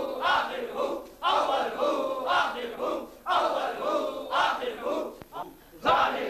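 A group of men chanting zikr together, a short devotional phrase repeated loudly and rhythmically about once a second.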